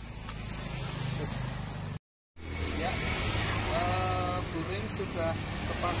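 A motor engine running steadily, with an abrupt break about two seconds in.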